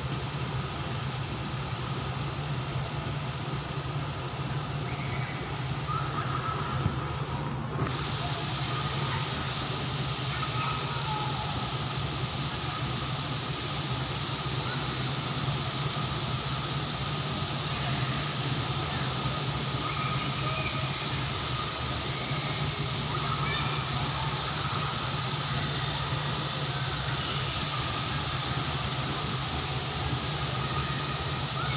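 Steady open-air ambience from a high balcony: a constant low mechanical hum and drone, with faint distant voices. The sound grows brighter and hissier about eight seconds in.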